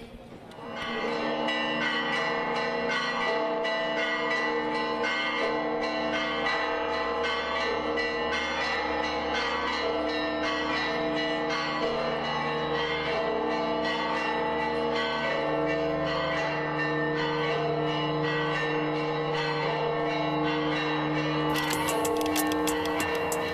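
Church bells pealing continuously, many bells struck in quick succession so their ringing tones overlap into a steady, level wash of sound.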